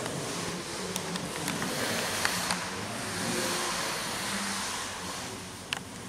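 A steady rushing noise that swells in the middle and eases toward the end, under faint murmuring voices, with a few sharp clicks.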